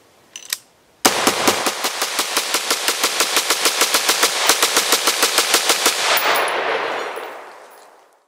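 AR-15 rifle (Davidson Defense 5.56 upper) fired in a rapid string of shots, about six or seven a second for some five seconds, starting about a second in. The shots stop abruptly, leaving an echoing tail that fades away.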